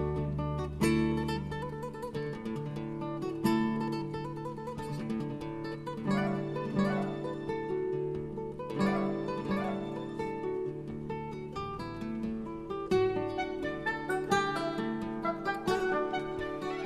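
Instrumental background music led by plucked acoustic guitar, many quick notes over held low notes.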